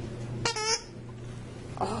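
A squeaky plush dog toy squeezed once, giving a short, high squeak about half a second in.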